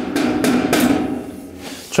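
A power tool hammering rapidly and continuously for nearly two seconds, fading near the end.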